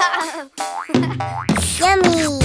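Cartoon sound effects: a wavering boing at the start and a falling pitch glide, then children's music starts about a second in, with a swooping boing near the end.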